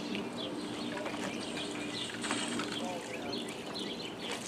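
Small birds chirping repeatedly in short high calls, over a steady low hum.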